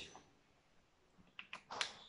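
Marker tapping on a whiteboard: a few short, sharp clicks in the second half, after a faint stretch of room tone.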